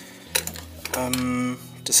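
A few light clicks and taps of metal hand tools being handled and set down on a wooden workbench: a vernier caliper and a steel rule.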